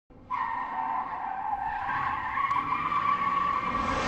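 Tyre squeal sound effect: one long, steady screech that starts a moment in and holds on a high pitch.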